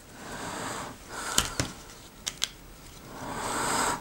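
Handling noise from a small plastic webcam and its cable: soft rustling swells with a few light clicks in the middle, and a rustle that grows louder towards the end.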